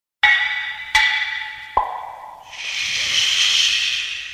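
Three ringing clinks on a glass beer bottle, about three quarters of a second apart, followed by a fizzing hiss of about two seconds as the crown cap is pried off and the carbonation escapes.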